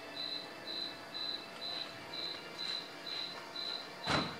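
A cricket chirping in a steady rhythm, short high chirps about twice a second.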